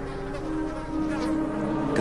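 Flies buzzing around a carcass, over a bed of low, sustained music notes.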